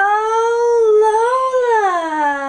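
A Staffordshire bull terrier cross giving one long, high-pitched whine that holds for over two seconds, rising slightly and then dropping in pitch near the end.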